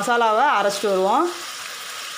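Crab pieces sizzling steadily in a steel pot, a steady hiss. A voice talks over the first second or so.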